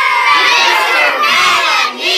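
A class of young children shouting and cheering together, loud and with no break, their high voices overlapping in one long yell that dips briefly right at the end.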